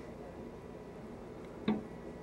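A single sharp clack of a hockey stick striking on the ice, about one and a half seconds in, over a faint steady background hiss.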